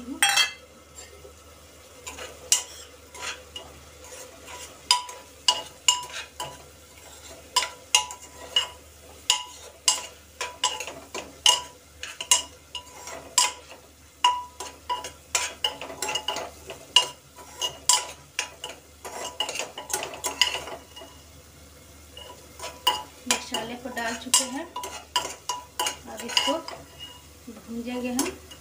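Steel spoon stirring onions and masala in an open pressure cooker on a gas stove, clinking and scraping against the metal pot one or two times a second with a short lull near the end, over a faint sizzle of frying.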